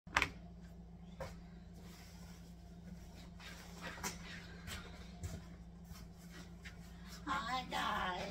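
Handling noise from a camera being set up: a sharp click right at the start and another about a second later. Then come scattered soft knocks as she moves about, over a steady low hum. A woman's voice begins near the end.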